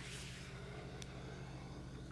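Faint steady low electrical hum under an even hiss: the background noise of an old recording, with one faint click about a second in.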